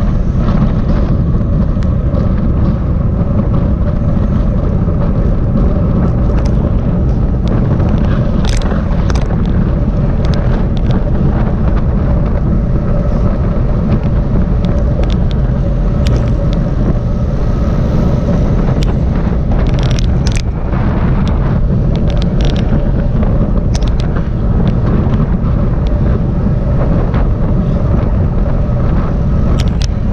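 Steady wind rumble on the microphone of a camera mounted on a road bike riding at race speed in a group, with a few scattered sharp clicks.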